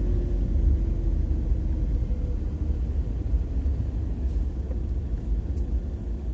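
Low, steady rumble of a van driving slowly on a wet street, heard from inside the cabin.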